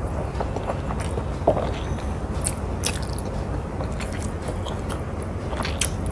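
Close-miked eating: a mouth chewing rice and curry eaten by hand, with scattered short wet clicks and a few sharper smacks.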